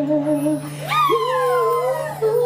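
A man singing a wordless held note with vibrato into a microphone, then a long high note with a sliding pitch starting about a second in, over a steady backing track.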